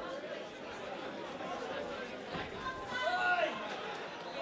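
Crowd chatter in a large hall, with a voice calling out above it about three seconds in.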